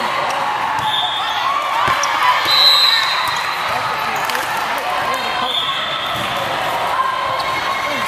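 Volleyball play in a large echoing sports hall: a sharp smack of the ball about two seconds in, a few short high squeaks, and the voices of players and spectators throughout.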